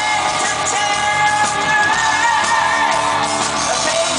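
A progressive metal band playing live, with the singer holding long notes over guitars, keyboards and drums. The recording is loud and dense, as heard from the audience.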